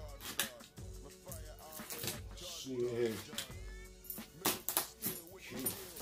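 A box cutter slicing through packing tape and cardboard on a shipping box, in a few sharp scraping strokes that come thickest in the second half. Quiet background music plays underneath.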